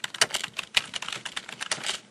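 Computer keyboard typing, a rapid run of keystroke clicks at roughly eight a second.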